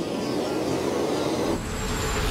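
Cartoon whoosh sound effect of a hit baseball flying off into the sky: a dense, steady rushing noise, joined by a low rumble about one and a half seconds in.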